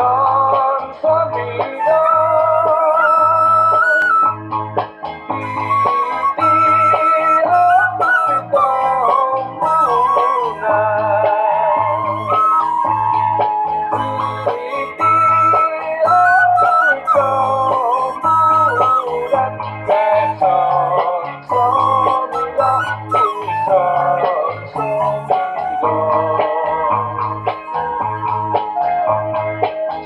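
Bamboo suling flute playing a slow melody with a wavering vibrato, over backing music with a steady low beat about once a second.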